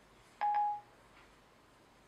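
iPhone 5 Siri chime: a short electronic beep, a single steady tone just under half a second long, sounding a little under half a second in. It marks Siri ending its listening after a spoken command.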